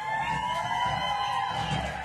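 Electric guitar feedback through an amplifier: a sustained tone that slides up in pitch and then slowly falls, over a low rumble.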